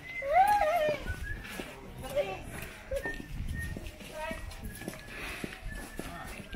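A child's high-pitched voice calls out with rising and falling pitch in the first second. Quieter chatter from people and children follows, with footsteps and small knocks on paving.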